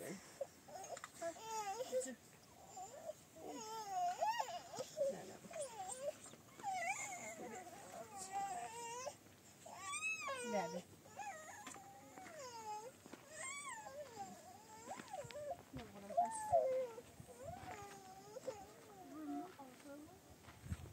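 A young child crying and whimpering on and off, in short, high, wavering cries.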